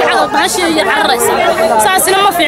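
A woman speaking in Somali, with other voices chattering in the crowd behind her.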